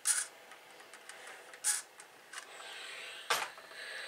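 Steam iron on a wool pressing mat steaming fabric from the back to fuse wool appliqué motifs: short puffs of steam, then a steady hiss from about two and a half seconds in, with a single knock of the iron against the board a little after three seconds.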